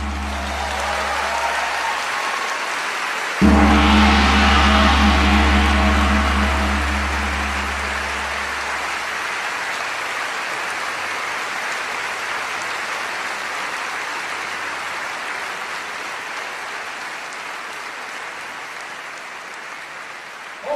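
A brass band's closing chord: a held chord fades, then a loud final chord with a deep bass note hits about three seconds in and rings out over several seconds. Audience applause runs throughout and slowly fades.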